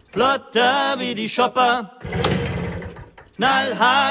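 Sung vocals from a German-language rock song, delivered in two short phrases. Between them, about two seconds in, comes a stretch of rough, noisy pulsing.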